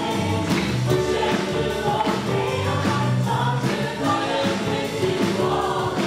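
Live church worship band playing a gospel song: several voices singing together over acoustic guitar, electric guitar and drums, with a steady beat.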